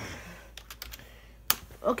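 Computer keyboard keys clicking: a quick run of a few keystrokes, then one sharper, louder click about a second and a half in.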